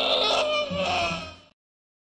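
A white domestic duck crowing like a rooster: one long, wavering call that fades out about a second and a half in.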